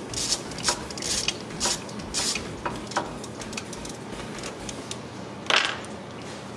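Hand tool working on the water pump bolts of a Porsche Cayenne 4.5 V8: a run of short, irregular metallic clicks and scrapes, with a louder scrape about five and a half seconds in.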